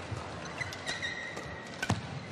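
Badminton rackets striking the shuttlecock in a fast doubles rally: a few sharp hits, the loudest near the end, over the steady noise of a large indoor hall.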